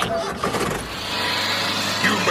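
An engine running with a steady low hum, growing a little louder about a second in.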